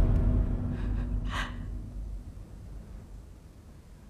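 A woman's short, sharp gasp about a second and a half in, with a fainter breath just before it, over a low rumble that dies away.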